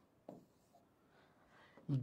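Faint writing sounds, a pen scratching during a pause, with one short soft tap about a quarter second in.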